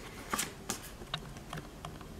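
Stiff card tickets being handled, with about five short crisp rustles and taps of the card spread over two seconds.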